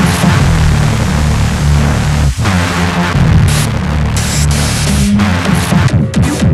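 Hard electronic music demo: a heavy stepping bassline under a dense, noisy wash. It drops out for a moment a little over two seconds in.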